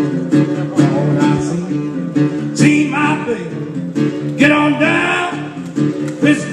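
Acoustic guitar playing a country blues instrumental passage between verses, with notes that bend up and down over steady low chords.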